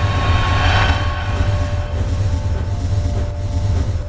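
Cinematic title sound effect: a deep, steady rumble under a few held music tones, with a whoosh that swells and fades about a second in.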